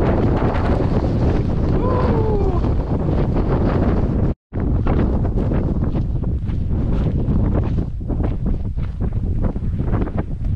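Strong wind buffeting the microphone, a loud, steady rumble, broken by a sudden brief dropout about four and a half seconds in. A short falling tone comes through the wind about two seconds in.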